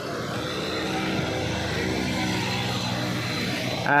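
A small vehicle engine running close by, steady and getting slowly louder, over general street traffic noise.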